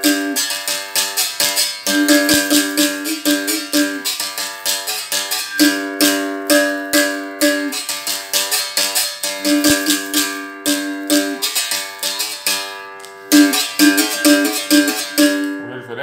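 A berimbau is struck with a stick while the caxixi rattle is shaken, playing a rhythmic capoeira toque of ringing notes that alternate between two pitches, with a quicker run of short notes near the end. It is played without the stone's buzzing (chiado) effect.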